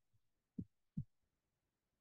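Near silence, broken by two soft, low thumps about half a second apart, a little after the start.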